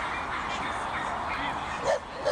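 A dog gives one short, loud bark near the end, over a steady background of people talking.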